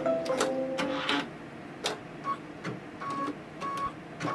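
Brother embroidery machine stitching with a mechanical whir and clicks, then stopping. From about two seconds in come short, even beeps about 0.7 s apart: the machine's signal that this step is done and the next fabric is to be laid in.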